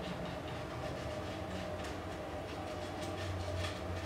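Faint, irregular scratching of a small paintbrush working paint into a textured sculpture, over a steady low hum.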